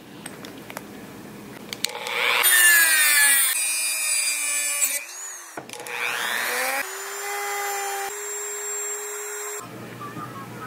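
Handheld rotary tool running against a metal drinking straw, its motor whine shifting in pitch from about two and a half seconds in, then holding steady for the last few seconds.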